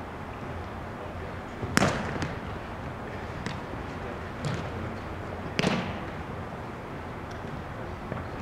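A Spikeball rally: sharp smacks of hands hitting the small ball and the ball popping off the round trampoline net, the two loudest about two and six seconds in, with lighter taps between, each ringing in a big echoing hall.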